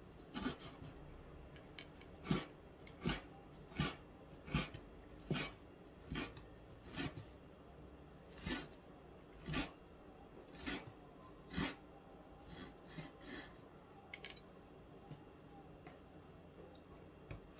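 Steel cleaver knocking on a wooden cutting board as it slices through raw fish, about one cut every three-quarters of a second, growing softer near the end.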